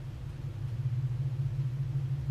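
A steady low rumble that slowly grows a little louder.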